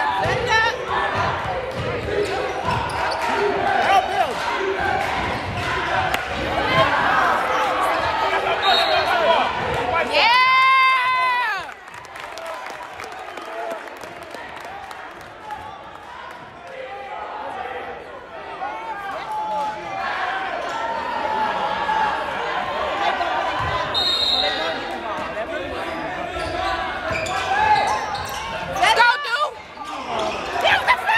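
Basketball game noise in a gym: a ball bouncing on the hardwood with players' and spectators' voices. About ten seconds in, a steady buzzer tone lasting about a second and a half sounds, most likely the scoreboard horn.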